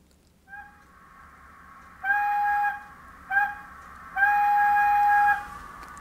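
Steam-whistle sound from a model locomotive's DCC sound decoder: a brief toot, then a long blast, a short one and a longer one, over a faint steady background sound.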